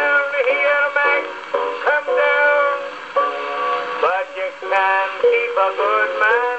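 A man singing with piano accompaniment, played acoustically from a 1901 Victor Monarch disc through the oak horn of a Victor Type III gramophone. The sound is thin and without bass, as an acoustic-era record is.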